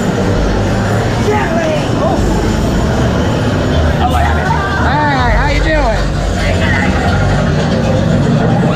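Loud haunted-maze soundtrack: a steady low rumble with a wavering, voice-like cry about four to six seconds in.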